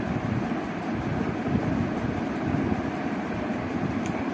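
A steady low rushing noise, even throughout, with no distinct events.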